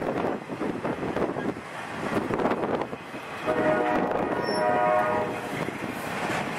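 Rumble of a freight train rolling by, with wind on the microphone. About halfway through, a locomotive air horn sounds a chord of several notes and holds it for nearly two seconds.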